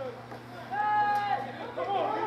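Spectators' and sideline voices chattering, with one long, loud yell held for most of a second about a second in.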